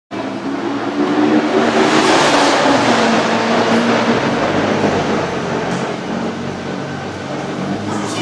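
A car engine idling steadily, with a louder rush of noise about two seconds in.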